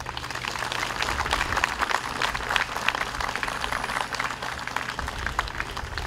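Audience applauding: many people clapping together, thinning out near the end.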